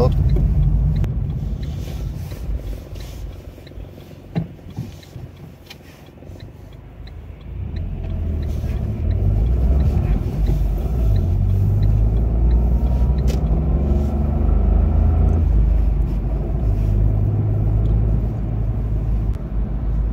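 Car cabin noise while driving: low engine and road rumble that drops quieter for a few seconds, with a faint regular ticking, then grows louder and steadier from about eight seconds in.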